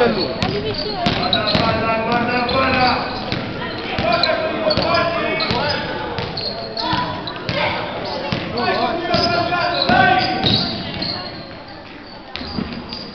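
A basketball bouncing on a gym floor during play, mixed with voices shouting throughout, in a large indoor sports hall.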